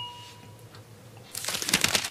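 A glass clink ringing out and fading in the first half second, then, after a pause, about half a second of soft scraping and rustling handling noise near the end.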